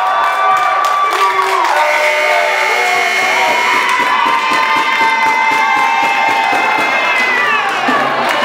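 Gym crowd cheering and shouting at the final buzzer of a basketball game, with a long held high pitched sound over it from about two seconds in that drops away near the end.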